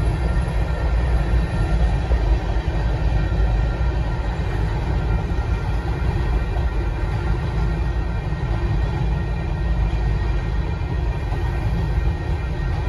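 Covered hopper cars of a freight train rolling past over the rails: a steady, unbroken rumble with faint steady tones above it.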